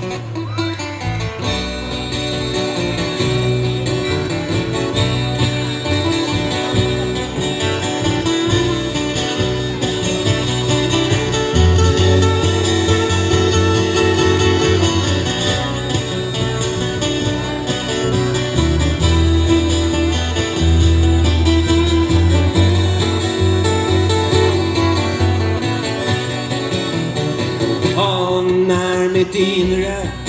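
Live acoustic band playing an instrumental passage: two acoustic guitars strummed over changing low bass notes, without singing.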